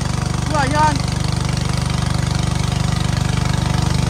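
A small boat's motor running steadily, a low even drone with a fast regular pulse.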